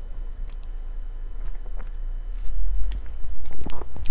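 A man gulping mouthfuls of beer from a glass, with small wet mouth and swallowing clicks, then the pint glass being set down on a rubber bar mat near the end.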